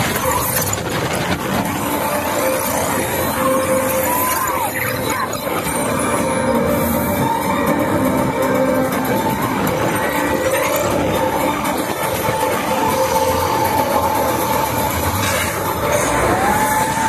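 The TRON Lightcycle Run roller coaster running through its indoor section: the noise of the train on its track and the rushing air, under the ride's soundtrack music.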